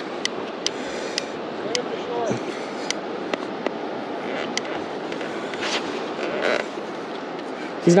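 Steady rush of river water and wind, with irregular sharp clicks from a large conventional fishing reel as a heavy fish is played on the line.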